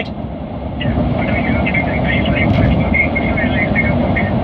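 A steady rumbling, rushing vehicle noise, with faint, muffled speech under it.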